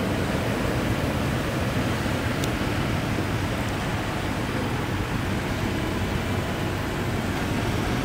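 2016 Toyota Land Cruiser's 5.7-litre V8 idling steadily, a low even hum under a steady hiss of room noise.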